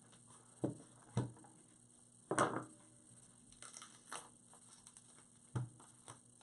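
A few light knocks and clatters of small objects being handled and set down on a tabletop, the loudest a short clatter about two and a half seconds in.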